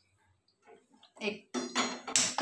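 Faint room tone, then near the end a woman speaks a word in Hindi while a metal pan clinks.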